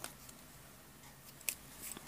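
Faint room tone with a small sharp click about a second and a half in.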